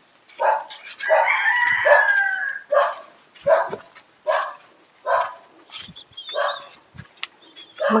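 A rooster crowing once, a drawn-out call that falls slightly in pitch, about a second in. Under it, footsteps on a dirt path come at a walking pace.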